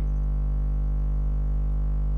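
Steady electrical mains hum, fairly loud and unchanging in pitch and level.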